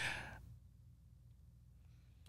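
A short breath that fades out within the first half-second, then near silence with a faint low hum.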